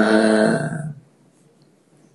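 A man's voice chanting the end of a Sanskrit verse, holding the last syllable on one steady pitch for about a second before it trails off, then near silence.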